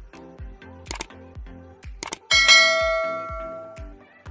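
Subscribe-button sound effect: a click or two, then a bright bell ding about two seconds in that rings for over a second before fading. Quiet background music with a steady beat plays underneath.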